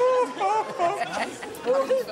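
A man and a woman making short, exaggerated wordless vocal sounds at each other. Their voices glide up and down in pitch.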